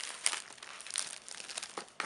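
Plastic shrink-wrap crinkling in irregular short crackles as hands pull it away from a cardboard box.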